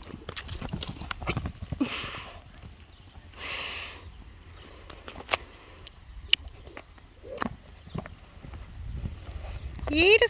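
Hoofbeats of a horse moving loose over a sand arena, first at a canter and then at a trot, heard as a scattering of short sharp thuds. Two brief rushing noises come about two and three and a half seconds in.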